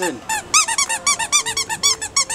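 Squeaky dog toy squeezed over and over, giving a fast run of short squeaks, about seven or eight a second, each rising and falling in pitch.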